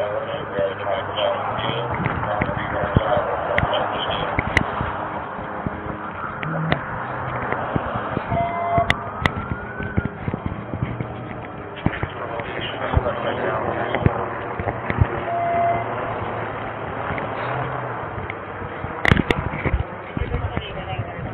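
Muffled, unintelligible voices under constant rustling and knocking of clothing against a body-worn camera's microphone, with a brief rising tone about eight seconds in and two short beeps.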